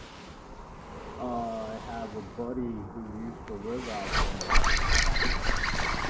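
A faint voice talks in the first half. From about four seconds in come water splashing and clattering, knocking handling noise as a hooked chub is brought to the surface beside the boat.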